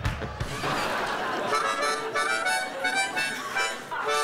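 A brief rushing noise, then a harmonica played into a microphone: a quick run of short notes and chords.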